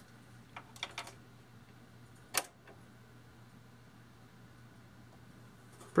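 A few light clicks and taps as a new fuse is fitted into the fuse holder of a vintage Tektronix oscilloscope, followed a little after two seconds in by one sharper single click.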